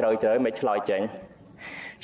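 Only speech: a man talking in Khmer, a Buddhist monk's sermon, with a short pause near the end.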